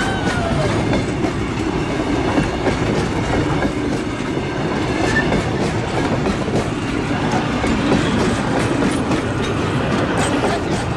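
Heritage passenger carriages of a train rolling past close by, steel wheels running on the rails in a steady rumble.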